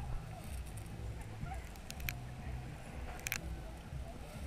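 Seawater heard from inside a submerged GoPro housing: a muffled, pulsing low rumble with faint gurgling. A few sharp clicks come about two seconds in and again a little after three seconds.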